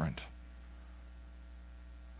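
Steady low electrical mains hum in the sound feed, with a man's last spoken word trailing off at the very start.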